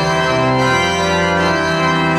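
Frobenius pipe organ improvising in full, sustained chords over a low pedal bass, the harmony changing about half a second in and again near the end.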